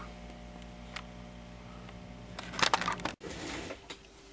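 A steady low hum with a single faint click about a second in and a short burst of rustling noise near the end, then an abrupt break in the sound.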